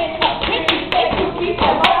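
A step team stepping: sharp hand claps and foot stomps, a few a second, with voices calling out over the beat.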